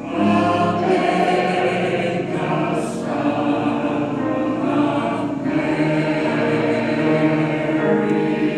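Senior mixed choir of men and women singing together in held chords. A new phrase begins right at the start, just after a brief breath.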